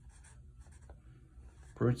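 Felt-tip Sharpie marker writing on paper: a few faint, short scratchy strokes as figures are written.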